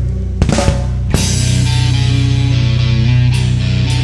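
Live rock trio of distorted electric guitar, electric bass and drum kit playing. A quick run of drum hits about half a second in leads to a loud hit about a second in, then the band plays on with held low bass notes under the guitar.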